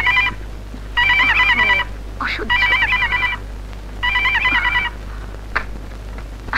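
Landline telephone ringing with a warbling electronic ring, in short repeated bursts about a second and a half apart. The ringing stops shortly before the handset is lifted.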